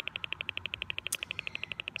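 Handheld gauss meter's audio signal: a rapid, even ticking, about twenty ticks a second, as it picks up a magnetic field of about 2.5 milligauss from nearby power lines.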